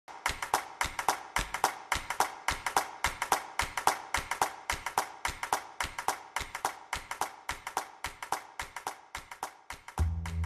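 A quick, steady rhythm of handclaps and taps, several a second, as percussion in music. It grows fainter toward the end.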